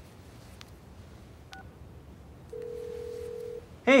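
A mobile phone call connecting: a brief electronic blip, then one steady low ringback tone lasting about a second, heard from the handset. A voice says "hey" at the very end.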